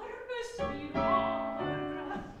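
A woman singing an operatic solo in a classical style, with piano accompaniment. Her phrases are sustained and bend in pitch, with a sharp consonant about half a second in.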